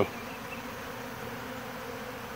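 Steady buzzing of a large mass of honey bees crowding open sugar-water feeders. The beekeeper takes feeding this heavy as the sign of hungry bees in a nectar dearth.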